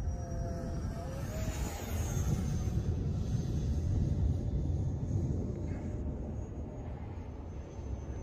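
Electric ducted-fan whine of an E-flite F-15 Eagle RC jet in flight, a thin steady tone that rises in pitch about a second in, over a steady low rumble.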